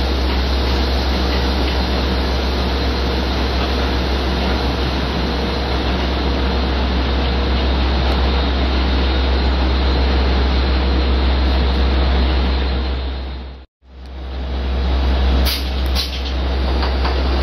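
Steady, loud rail-yard noise: a New York City Subway No. 7 train running across the yard, under a heavy constant low rumble. It breaks off abruptly for an instant near the end, then carries on at the same level.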